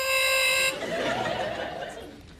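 A game-show 'wrong answer' sound effect from a handheld sound box: a few descending brassy notes end on one long held note, which cuts off under a second in. It signals that the guess was wrong, and audience laughter follows.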